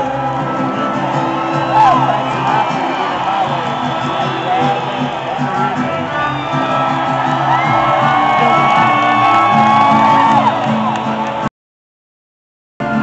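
Live mariachi band playing, with a crowd shouting and whooping over the music. The sound cuts out completely for about a second near the end.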